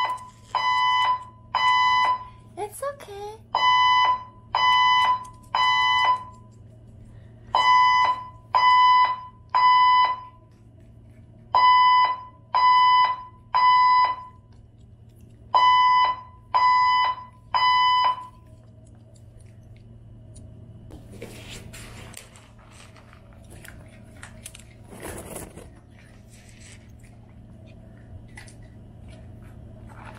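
Building fire alarm sounding during a scheduled system test: high beeps in groups of three, each group about four seconds apart, five groups in all. The alarm stops about 18 seconds in.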